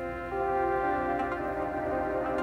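Aparillo software synthesizer holding sustained notes played from on-screen keyboard pads, a new, louder note entering about a third of a second in and ringing on over the earlier one.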